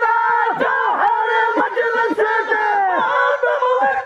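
A group of men's voices chanting and calling out together in overlapping, gliding phrases, several dropping sharply in pitch, over a steady held tone underneath; devotional chanting in praise of the Prophet.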